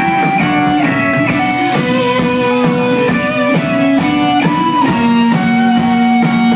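Live rock band playing loud, with electric guitar in front: a melody of held notes that moves to a new pitch every second or so.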